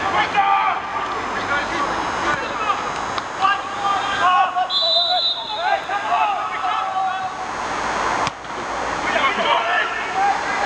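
Footballers' and onlookers' voices shouting and calling across an open pitch, with a brief high steady whistle tone about halfway through.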